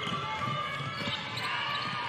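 Live court sound from a basketball game in a near-empty arena hall: a basketball being dribbled on the hardwood floor, with faint sneaker squeaks and distant players' voices.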